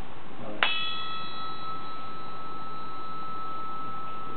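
A brass bar struck once about half a second in, ringing with a clear, high tone. A few brighter overtones die away within a second, while the main note, about 1330 Hz, holds steady.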